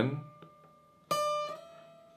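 A single note plucked on an acoustic guitar's second string about a second in, ringing and then slid up a couple of frets, from the 11th toward the 13th fret, as it fades.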